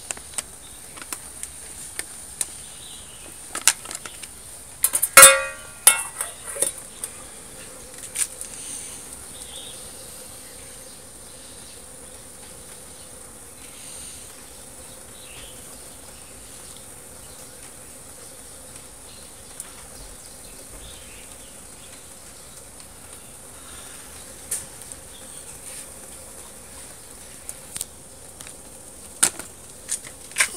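Homemade tin-can gasifier stove burning nut shells: a steady soft flame noise with scattered crackles and pops, and a loud sharp clatter about five seconds in.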